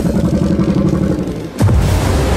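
Film soundtrack: a low, sustained orchestral score, then, about one and a half seconds in, a sudden loud boom with a heavy rumble that carries on as a giant monster bursts up out of the sea.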